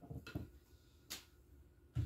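A few soft clicks and knocks of a spatula against a mixing bowl as the last of the mixture is scraped out, with one more knock about a second in as the bowl is handled.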